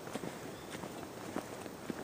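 Faint footsteps of a person walking, a few soft irregular steps.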